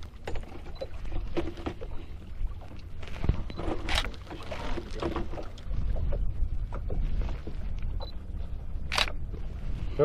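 Steady low rumble of a small fishing boat on the water, broken by a few sharp knocks from the cooler under the boat's seat being handled, clearest about four seconds in and again near the end.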